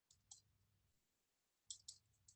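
Near silence with faint, sharp clicks from handwriting being entered on a computer whiteboard: a quick pair of clicks just after the start and another cluster near the end.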